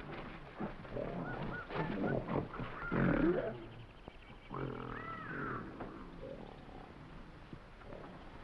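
Several wild-animal roars and calls on an old film soundtrack, the loudest about three seconds in and dying away after about six seconds.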